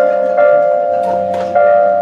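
Live band music led by an electric keyboard playing held chords, with a new chord struck twice and low notes sounding underneath.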